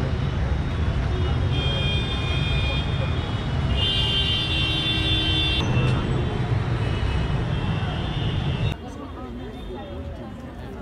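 Steady city street traffic noise with a low rumble of engines and tyres. Car horns sound twice, about one and a half and four seconds in, each held for a second or two. The traffic sound cuts off abruptly near the end.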